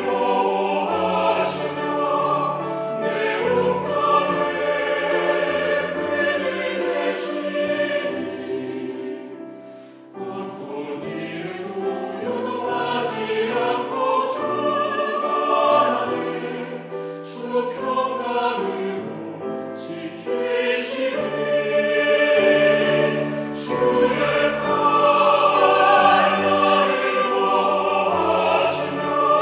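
Mixed church choir singing a Korean sacred anthem in parts with instrumental accompaniment. The music thins to a brief break about ten seconds in, then the choir comes back in.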